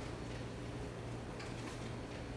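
Room tone: a steady low hum with a few faint ticks or clicks, the clearest about a second and a half in.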